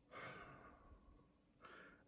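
A man's faint sigh: a soft breath out lasting about half a second, followed near the end by a short breath in.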